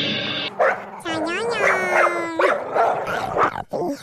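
Dog vocalizing: short barks and one long drawn-out call of more than a second, starting about a second in.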